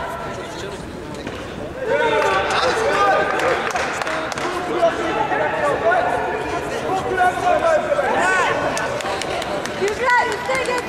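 Several people shouting and calling over one another, starting about two seconds in, with a louder rising call near the end.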